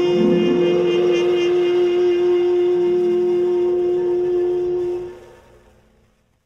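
A 1950s jazz orchestra recording closes a piece on a long held note over a sustained chord, which fades away about five seconds in.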